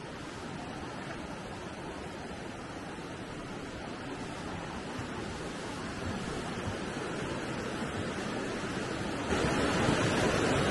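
A river rushing through the gorge below a footbridge: the East Fork Quinault River. It is a steady wash of water noise that slowly grows louder, with a sudden step up shortly before the end.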